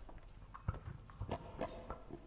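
A few faint, scattered clicks and knocks, the sharpest about two-thirds of a second in.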